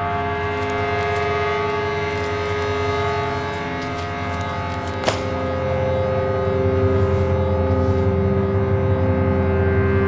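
Sustained droning chord from the film's score or sound design: many steady pitches held together, with a sharp click about five seconds in, after which the drone changes its pitches and swells louder.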